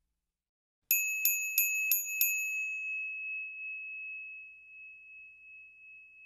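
A small bell sound effect rings about a second in: five quick dings, then a clear high ring that slowly fades away.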